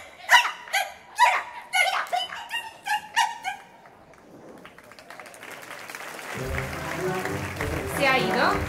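Women's voices giving a run of short, high-pitched, squealing cries that swoop up and down in pitch, then fading out. After a brief lull, a live wind band comes in with sustained low chords near the end.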